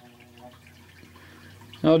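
Quiet room tone with a faint, steady low hum and no distinct events; a man's voice starts near the end.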